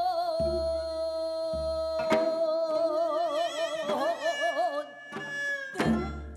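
Korean traditional gugak ensemble music: a long held melody note that begins to waver with wide vibrato about three seconds in. Low drum strokes sound in the first two seconds, and there are sharp plucked or struck accents around two seconds and again near the end.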